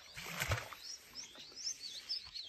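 Small birds chirping: many short, high calls that rise and fall, with a soft thump about half a second in.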